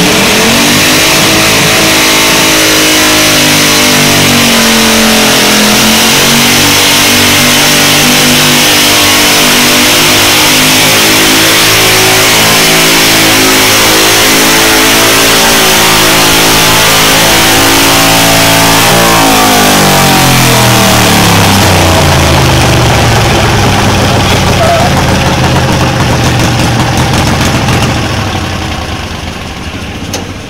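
Garden tractor engine running at high revs while pulling a weight-transfer sled, loud and steady. Its pitch dips and recovers a few seconds in, then falls steadily through the second half as the tractor slows under the sled's load. The sound fades near the end as the run stops.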